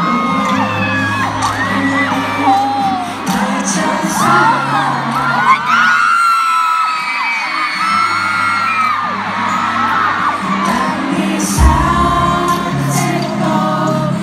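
Live pop ballad through a stadium sound system, with a male voice singing the melody over a steady bass line, and fans screaming and cheering throughout. The bass drops out for a moment in the middle, and a heavy low hit comes back in near the end.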